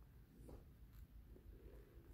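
Near silence: a faint low rumble with a few soft scuffs of footsteps on a debris-strewn floor.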